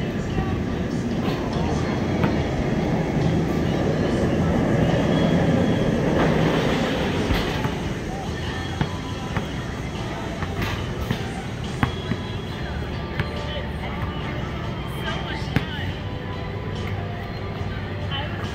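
Basketballs being shot at a hoop, giving scattered sharp knocks and thuds off the rim, backboard and pavement, more of them in the second half. Beneath them is a steady rumble with music, louder in the first half.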